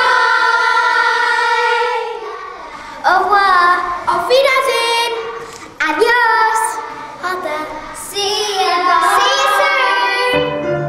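A group of girls singing together, opening on a long held note and going on in short sung phrases.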